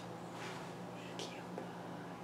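Soft whispering: two short breathy hisses, about half a second in and again just past a second, over a steady low hum.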